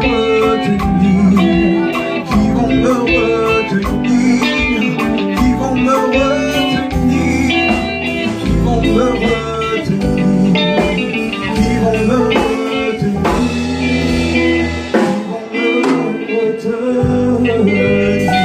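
A live band playing: electronic keyboard chords, electric bass guitar and drum kit. The low notes drop out for a couple of seconds near the end, then come back in.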